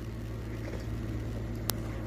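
A steady low hum with faint background noise, and a single sharp click near the end.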